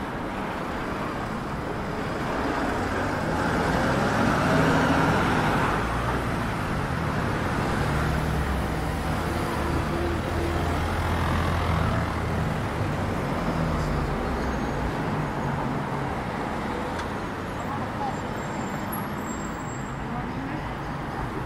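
City road traffic: cars and a heavier vehicle passing on a wet street, with a low engine hum that builds a few seconds in and fades away near the end.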